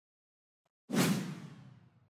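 Edited-in whoosh sound effect marking a cut between shots: it comes in suddenly about a second in, fades out over about a second, then cuts off.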